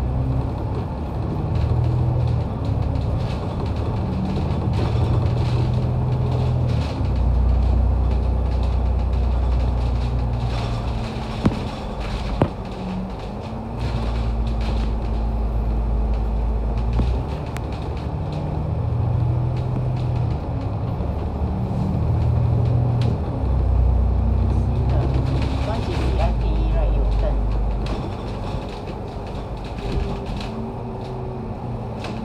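Cabin sound of an MAN A95 double-decker bus under way: the diesel engine's low drone steps up and down every few seconds as the bus pulls away and the automatic gearbox changes gear, over steady road rumble. Two sharp clicks come a second apart near the middle.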